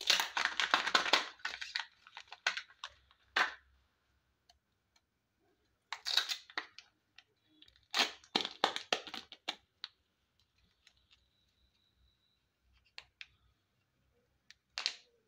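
Plastic wrapper of a Kinder Joy egg crinkling and tearing as it is peeled off, then crackling and clicking as the egg's plastic halves are pulled apart. The sound comes in bursts: loudest at the start, again about six and eight seconds in, then a few soft clicks near the end.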